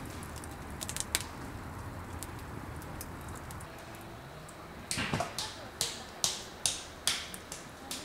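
Wood campfire crackling: a few light pops about a second in, then from about five seconds a run of sharp, irregular pops.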